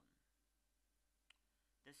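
Near silence, with one brief faint click a little past halfway.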